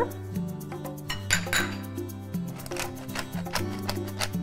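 Background music, with light clinks and scrapes of a metal spoon against a glass mixing bowl.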